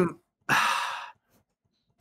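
A man sighing: a single breath out lasting about half a second, fading away.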